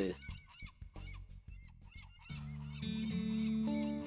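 Faint short bird calls and clicks for the first two seconds, then soft background music of held notes starts a little after two seconds in and grows louder.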